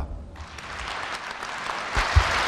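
Audience applauding. The clapping starts about a third of a second in and builds steadily.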